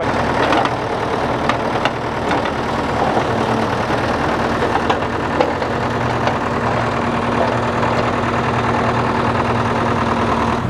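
L&T-Case backhoe loader's diesel engine running steadily while the backhoe arm digs, with a steady tone coming in after about three seconds.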